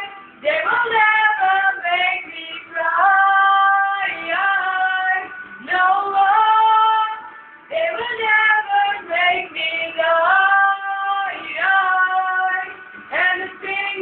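A high singing voice holding long notes of about a second each over music, with brief gaps between phrases.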